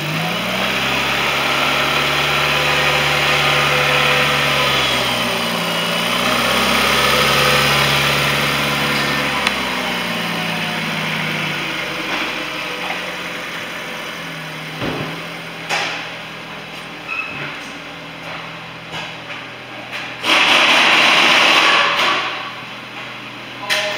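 A 2017 Nissan Sentra's 1.8-litre four-cylinder engine running: it is revved up and held twice, then settles back to idle. Near the end there is a short burst of loud rushing noise.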